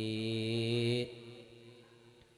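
A monk's voice chanting Pali, holding the drawn-out last syllable of a verse on one steady pitch through the microphone. The note stops about a second in.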